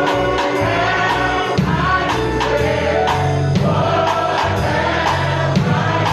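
Gospel singing by a group of voices with band accompaniment: bass and drums keeping a steady beat of about two a second under the melody.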